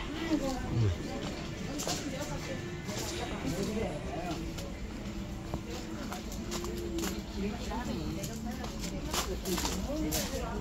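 Background chatter of other people's voices in a busy lane, with some music and scattered footsteps on gravel.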